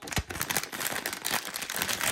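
Packaging wrapper crinkling and crackling continuously as a blind-box figure is unwrapped by hand, with a soft low bump near the start.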